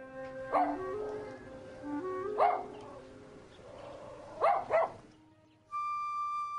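Small dog barking: single barks about half a second and two and a half seconds in, then a quick double bark near the end. Background music with held notes plays underneath, and a new held note starts just at the end.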